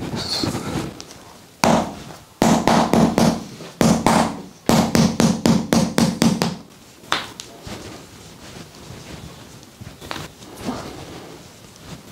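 A mallet striking a wedge held against a person's lower back in a chiropractic percussion adjustment. It strikes rapidly, about five times a second, in runs from about two seconds in until past six seconds, followed by a few lighter knocks.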